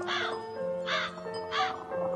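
A bird cawing three short times over soft music of sustained notes.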